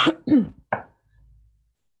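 A woman coughing: one sharp cough, then two shorter coughs within the first second.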